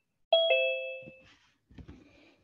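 A two-note ding-dong chime, the second note lower than the first, ringing out and fading over about a second. A brief low bump follows near the end.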